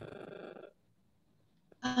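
A brief steady tone with even overtones, lasting under a second, then dead silence, then a woman starts speaking near the end.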